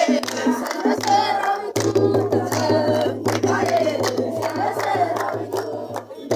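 A group of men and women singing an Amharic mezmur (Ethiopian Orthodox hymn) together, with steady rhythmic hand clapping keeping the beat.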